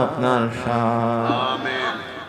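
A man's voice chanting a melodic Sufi supplication prayer (munajat) in Urdu into a microphone. He holds one long, level note for about a second, then the voice trails off near the end.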